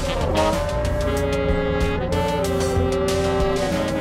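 Free-improvised noise jazz from synthesizers and a saxophone: several pitched tones at once, some sweeping up and down in arcs and some held steady through the middle, over a low rumble and scattered clicks.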